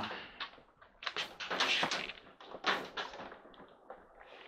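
Several short knocks and handling clatter as a laptop is set down and shifted on top of a clothes dryer.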